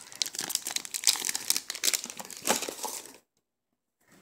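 Crackling and rubbing of a hard plastic graded-card slab as hands turn it over close to the microphone. The irregular crackle stops sharply about three seconds in.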